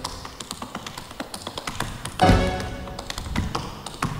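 Rapid tap-dance steps: the metal taps of tap shoes striking the stage floor in quick clusters of clicks, over band accompaniment. The band comes in louder with a held chord a little past halfway.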